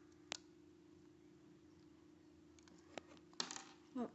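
Small sharp plastic clicks from the front winch of a Lego Technic Jeep Wrangler model being handled as its string is pulled out. There is one click, then a quick run of clicks about three seconds in, over near silence with a faint steady hum.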